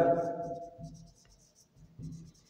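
Marker pen writing on a whiteboard: faint, short scratching strokes. A man's drawn-out spoken word fades out over the first second, the loudest thing here.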